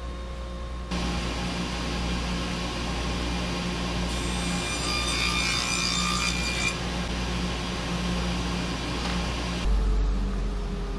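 Table saw running, with a higher, harsher cutting sound for about three seconds in the middle as a panel is fed through the blade.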